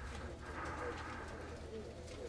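Faint pigeon cooing, a few short soft coos over a low steady hum.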